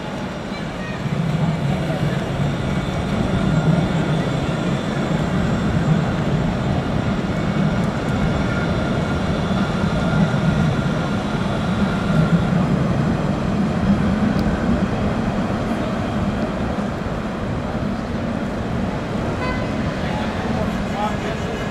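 Electric low-floor tram passing close by on street track: a steady low running noise of wheels and motors, with a faint steady high whine, amid city traffic.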